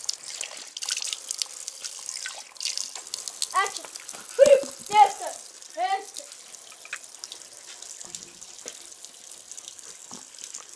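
Borehole water running in a thin stream from a hose into a water-filled barrel, a steady splashing trickle. A few short spoken sounds come about halfway through.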